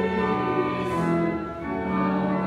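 Church choir singing a hymn in slow, held notes with pipe organ accompaniment, with a brief break between lines about one and a half seconds in.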